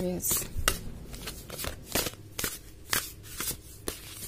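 A deck of tarot cards being shuffled by hand, with sharp card snaps coming about twice a second.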